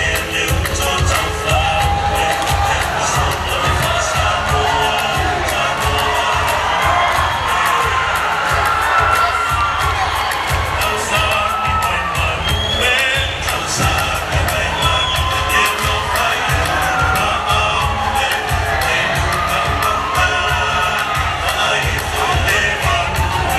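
Audience cheering and whooping over a fast, steady percussion beat.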